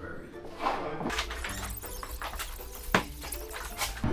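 Background music with rustling and knocking as a large wrapped roll of flooring is carried and handled, with a sharp knock about three seconds in.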